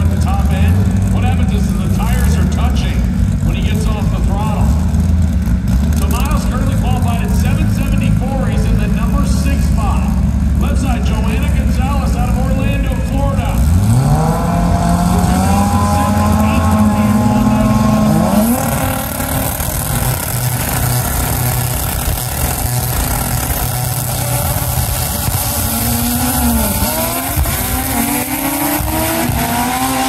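Stick-shift drag race car engines. A low steady engine note with voices over it gives way, about 14 s in, to an engine revving up in one long rising climb that cuts off near 19 s. Near the end another engine rises in pitch again with a break in it.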